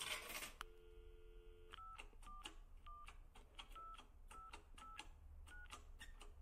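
A telephone's steady dial tone, broken by a click near the start, stops a little under two seconds in. About nine touch-tone key beeps follow, unevenly spaced, as a number is dialed.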